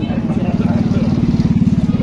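Small vehicle engine running close by with a rapid, even firing beat, growing louder toward the end.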